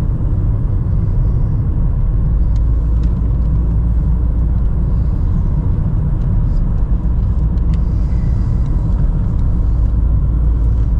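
Steady low rumble of a moving car heard inside its cabin: engine and tyre noise on the road, holding even throughout.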